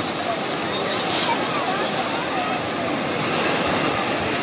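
Sea surf breaking and washing up the beach in a steady roar, with faint, indistinct voices of bathers calling out over it.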